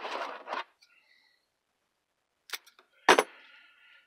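Handling noises from working a small square of foam into a foam boffer sword tip: a short rustle at the start, then a sharp knock about three seconds in, followed by a brief scuffing of foam being rubbed.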